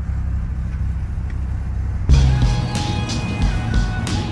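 A car engine idling, a steady low rumble heard from inside the cabin. About halfway through it cuts suddenly to background music.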